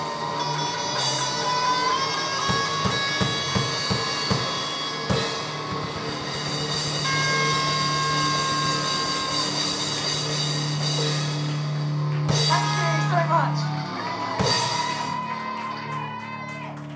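Live rock band with electric guitars and drum kit: long held, ringing guitar chords over a run of drum hits, then more hits and wavering guitar notes late on, after which the sound starts to die away, as at the close of a song.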